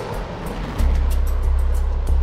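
Rocket launch: a rushing noise of the rocket exhaust, with a heavy deep rumble coming in a little under a second in, under background music.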